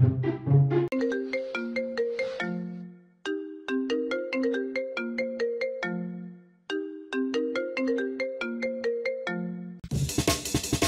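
A phone ringtone: a short, bright melody of plucked notes played three times over, with a brief pause between repeats. It starts about a second in, as another tune ends, and gives way to loud electronic music at the very end.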